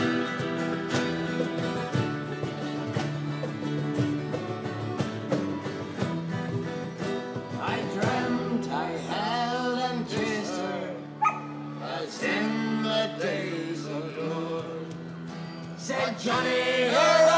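Live acoustic band music: strummed guitars and a cajón beat, with a fiddle melody sliding between notes over the second half.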